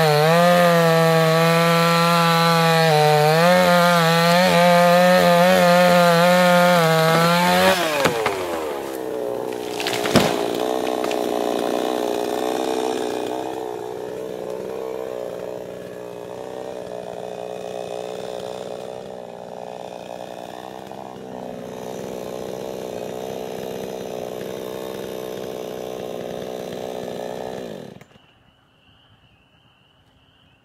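A cheap Chinese-made two-stroke chainsaw cuts through a tree trunk at full throttle, its pitch dipping as it loads. About eight seconds in the throttle is released and the engine winds down, and a single sharp knock about ten seconds in comes as the cut trunk falls. The saw then idles until it is switched off near the end.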